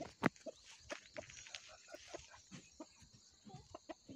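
A rooster clucking softly in short, scattered notes, with a few sharp clicks among them.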